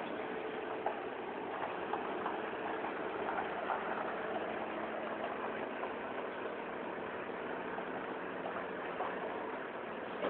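An engine idling steadily, with a few faint clicks over it.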